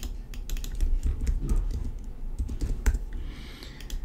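Computer keyboard being typed on: a run of irregular keystroke clicks as numbers are entered into fields.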